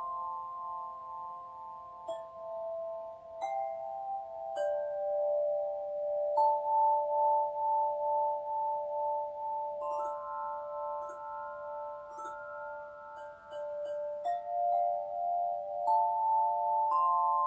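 Metal singing bowls struck one after another with a mallet every couple of seconds. Each rings on in a long, pure tone, and the overlapping tones pulse with a slow wavering beat.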